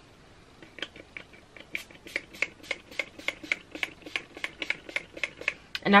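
Hand spray bottle of leave-in conditioner pumped over and over in quick, even spritzes, about four a second, wetting curly hair.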